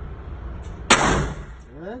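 .22LR handgun fired once, about a second in: a single sharp shot with a short echo off the indoor range walls.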